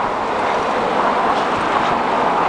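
Steady rushing noise of road traffic, with cars passing in the lanes alongside, swelling slightly about halfway through.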